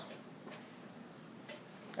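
Quiet room tone with two faint ticks about a second apart.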